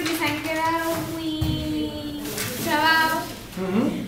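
A young girl's voice drawn out on one long, level pitch for about two seconds, followed by shorter, more varied phrases.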